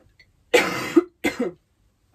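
A woman coughing twice, a longer, louder cough about half a second in, then a shorter one, from a tickly cough and sore throat she has had for a couple of days.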